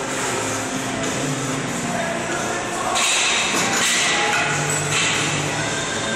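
Seated cable row machine loaded to 200 pounds and worked through repetitions: the cable runs over its pulleys and the weight stack knocks as it rises and falls, with forceful breaths from the lifter under the load.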